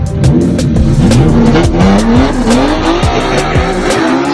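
Two drag-racing cars, a 3.5-litre V6 car and a naturally aspirated K24 four-cylinder car, accelerating hard off the line, their engines revving up and dropping back with each gear change in repeated rising sweeps, over background music with a steady beat.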